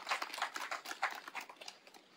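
Scattered hand applause from a crowd, a dense patter of claps that thins out and fades away over about two seconds.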